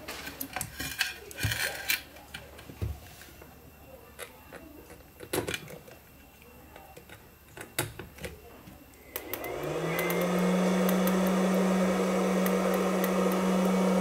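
Clicks and knocks of alligator clips and wires being handled. About nine seconds in, the fish-stunner inverter's cooling fan starts, its hum rising in pitch for about a second and then running steadily. The fan runs but the unit gives no output, the fault that was reported.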